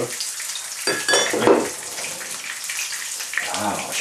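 Fish fingers frying in oil in a pan, a steady sizzle. A short, louder clatter with a ringing tone stands out about a second in.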